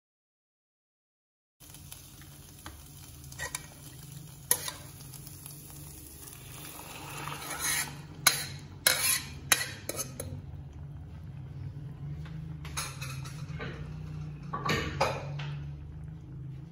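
A wooden spatula stirs onions, tomatoes and dried chillies frying in oil in a pan, starting after a second and a half of silence. About halfway through, cooked dal is poured and ladled into the hot pan with a rise in sizzling, and a metal ladle knocks and scrapes sharply against the pot. More clinks of utensils follow near the end.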